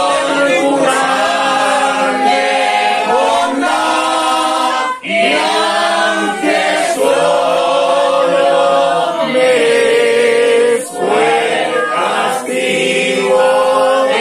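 A congregation of voices singing together, unaccompanied, in long held notes, with short breaks between phrases about five and eleven seconds in.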